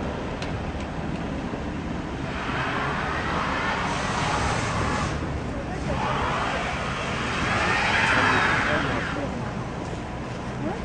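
Traffic on a snow-covered street: tyres hissing through packed snow and slush as vehicles pass, swelling about two seconds in and fading, then swelling again and fading near the end, over a steady low rumble of engines.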